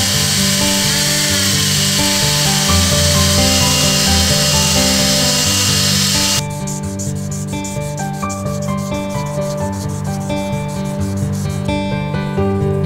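Handheld rotary tool spinning a small sanding drum against the curved finger choil of a knife handle, a steady grinding hiss that cuts off about six seconds in. Background music plays throughout.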